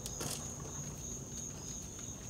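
Crickets trilling steadily at a high pitch in the background, over a low rumble, with one faint click near the start.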